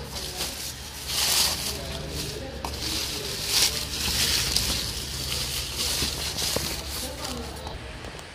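Plastic bag wrapping and foam packaging sheet rustling and crinkling as a flat-screen TV is pulled out of its cardboard box. The crackling starts about a second in and runs irregularly until near the end.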